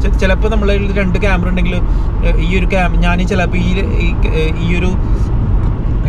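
A man talking inside a moving car, over the steady low rumble of road and engine noise in the cabin.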